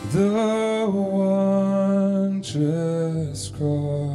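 A man singing slow worship music into a microphone over acoustic guitar. He holds one long note for over two seconds, then sings two shorter notes.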